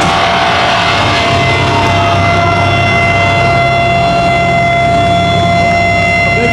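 Guitar-amp feedback and a drone held after the heavy music stops: a steady high tone enters, and more steady tones above it join one after another over a low hum.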